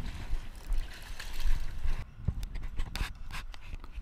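A landed tailor slapping and flapping on wooden jetty decking: a run of quick, irregular knocks in the second half, over a low rumble of wind on the microphone.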